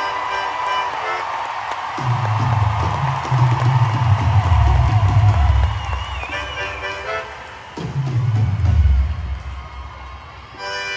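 Live rock band playing in concert, heard from the audience: heavy bass and drum swells, with a short drop-off about three quarters of the way through.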